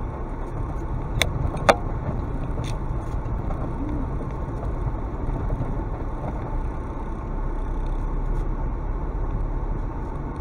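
Car driving slowly over a rough, stony dirt track, heard from inside the cabin: a steady low rumble of engine and tyres, with two sharp clicks a little over a second in.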